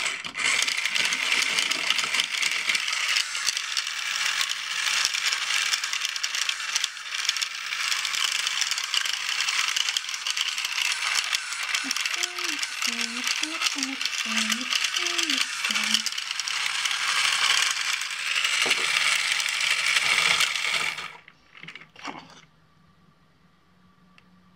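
A small handheld mixer with plastic beaters running steadily in a plastic cup of liquid, a continuous whirring clatter that cuts off suddenly about 21 seconds in.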